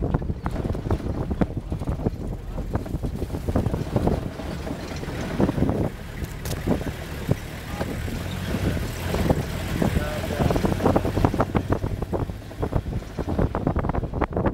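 Four-wheel-drive pickup driving over a rough, rutted dirt track, its engine rumbling steadily while the body knocks and rattles over the bumps. Wind buffets the microphone through the open window.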